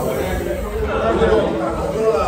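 Indistinct talk and chatter of several voices, no single voice clear.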